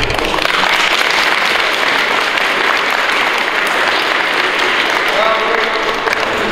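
An audience clapping, starting abruptly and holding dense and steady, with a voice or two rising over it near the end.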